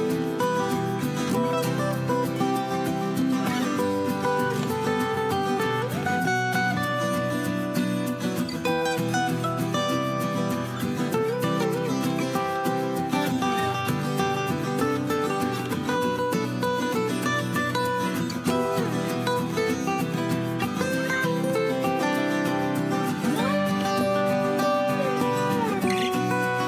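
Background music led by acoustic guitar.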